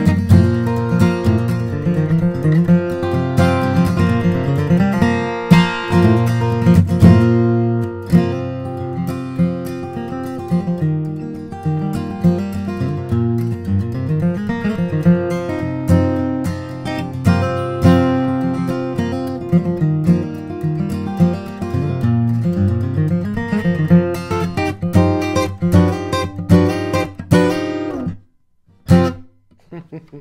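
John Arnold D-18 steel-string dreadnought acoustic guitar played solo, mixing chords with moving bass runs. The playing stops about two seconds before the end.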